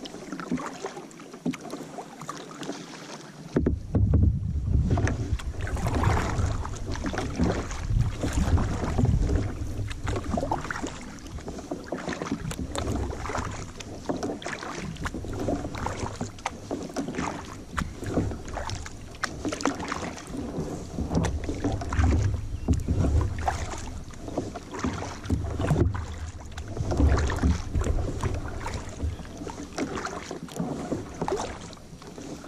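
Paddling a kayak on a lake: water splashing and lapping at the paddle and hull. Wind gusts buffet the bow-mounted camera's microphone in an uneven low rumble that sets in about three and a half seconds in.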